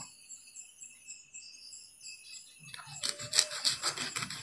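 Serrated knife sawing through the skin of a red dragon fruit to cut off its end, heard as a rapid rasping cut in the last second or so.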